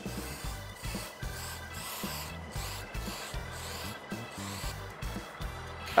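Background music with a steady bass beat over a run of short hissing sprays, each about half a second long, as panel-prep liquid or primer is sprayed onto a car fender.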